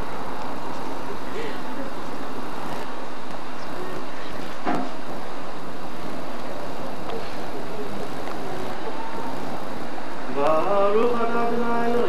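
Steady outdoor background noise for most of the time, then about ten seconds in a man begins chanting in long held notes: the sung Hebrew blessings of a Jewish wedding ceremony.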